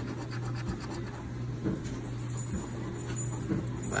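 A coin scratching the coating off a paper scratch-off lottery ticket in repeated short strokes, over a steady low hum.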